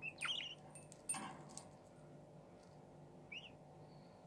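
Pet budgerigar giving short chirps, one at the start and another about three seconds in. A few sharp clicks come around a second in, typical of the bird knocking at a toy.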